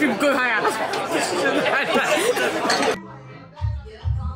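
Several voices talking at once for about three seconds, then a sudden cut to background music with a pulsing bass beat.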